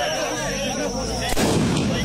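A single sharp bang about one and a half seconds in, with a low rumbling tail after it.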